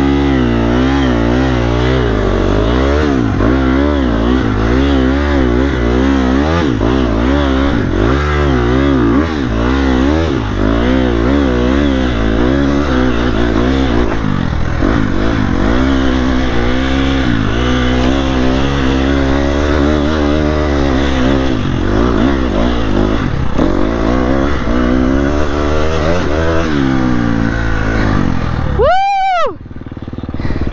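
KTM dirt bike engine revving under load on a steep, rocky hill climb, its pitch rising and falling every second or so as the throttle is worked. Near the end the engine sound cuts out suddenly.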